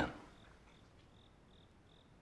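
Faint cricket chirping: short high chirps repeating about three times a second.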